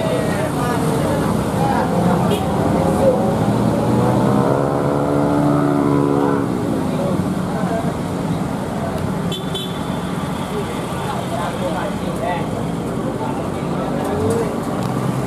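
Mixed road traffic on a steep mountain hairpin: engines of cars, motorcycles and a light truck running under load up the grade. Roughly four seconds in, one engine's note rises and then falls away over about two seconds as it pulls past.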